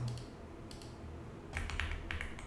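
Computer keyboard keys being tapped: a couple of light clicks just under a second in, then a quick run of keystrokes from about a second and a half, over a faint low hum.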